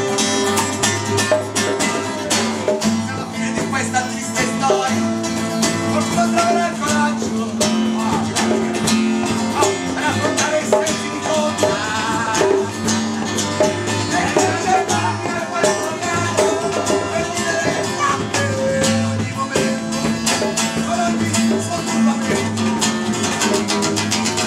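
Live band music: a strummed acoustic guitar with a drum kit keeping a steady beat.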